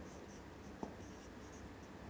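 Marker pen writing on a whiteboard: faint, short rubbing strokes as a word is written letter by letter, with one small tap of the pen a little under a second in.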